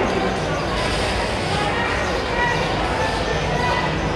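Roller skates rolling and knocking on a hard indoor floor, with voices of players and spectators echoing around a large hall.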